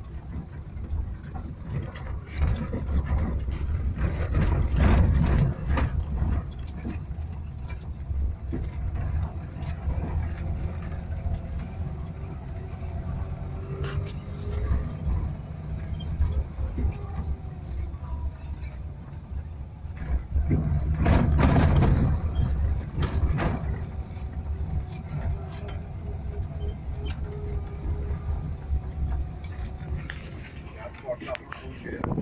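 Maruti Omni van's three-cylinder petrol engine running as the van drives a rough dirt track, heard from inside the cabin, with the body rattling and knocking over the bumps. It gets louder about four to six seconds in and again around twenty-one seconds.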